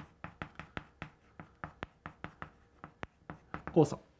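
Chalk writing on a blackboard: a quick run of short taps and scrapes, several strokes a second, as characters are written.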